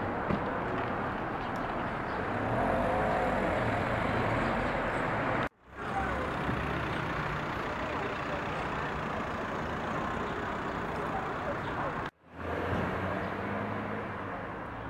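Outdoor street ambience: steady traffic noise with background voices, cutting out abruptly twice, about five and a half and about twelve seconds in.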